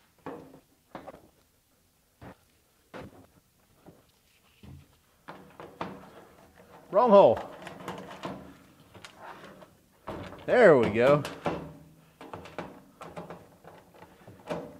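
Light clicks and knocks of screws being picked up and set into a plastic mounting plate over rivet nuts, then quiet scraping as a hand screwdriver turns a screw in. A man's voice sounds briefly twice, around the middle and a few seconds later, louder than the handling.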